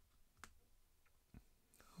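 Near silence broken by two faint clicks, about half a second and a second and a half in: tarot cards tapping as they are handled and set down on the pile.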